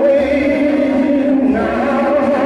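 A Northern soul record playing over a dance hall's sound system: several voices hold sung notes with vibrato over a bass line.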